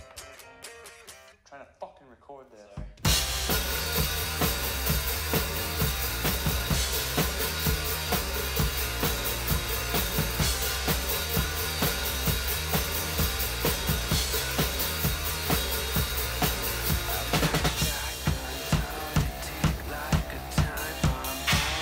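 Acoustic drum kit played along to a recorded metalcore song. After a quiet intro of about three seconds, the full band comes in loudly, with a steady pounding kick and snare beat and crashing cymbals.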